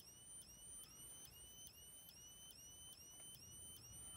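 Faint, high-pitched squeal of an older Wheelock fire-alarm strobe, rising briefly in pitch and then holding, repeating about three times a second as the strobe recharges between flashes.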